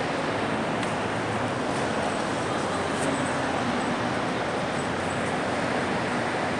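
Steady background hubbub of a busy indoor shopping mall, even and unbroken, with a couple of faint clicks.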